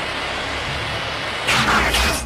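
Sci-fi cartoon sound effects: a steady mechanical rushing hum, with a louder rush of noise starting about one and a half seconds in.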